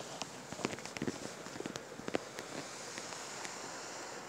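Faint footsteps and small handling clicks from a hand-held camera, scattered irregular taps over a quiet background hiss.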